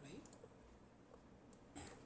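Faint keystrokes on a computer keyboard as a word is typed: a few scattered, quiet clicks.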